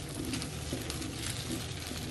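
Wooden spatula stirring and scraping scrambled eggs around a hot nonstick wok, with soft sizzling of the egg; a steady low hum runs underneath.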